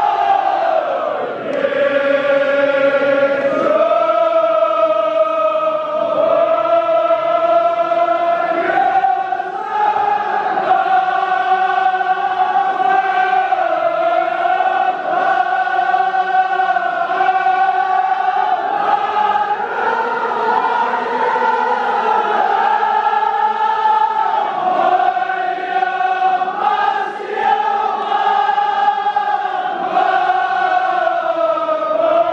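A large group of men chanting a Kashmiri marsiya (mourning elegy) in unison, in long held notes that slowly rise and fall without a break.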